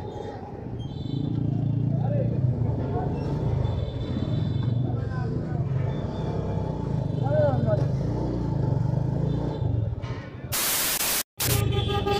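A TVS Metro Plus's small single-cylinder engine runs steadily under road noise as the scooter-style bike rides slowly through traffic. Near the end there is about a second of loud hiss, then a brief cutout.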